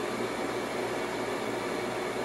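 Steady background hiss with a faint low hum, holding at one level.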